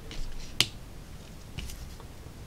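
A sharp click a little over half a second in, with softer ticks just before it and another short cluster of ticks near the end.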